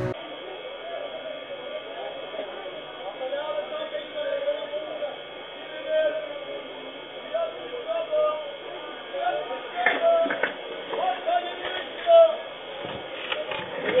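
Security-camera audio from inside a small shop, thin and muffled: indistinct voices over a steady background hiss. A few clicks and knocks come near the end.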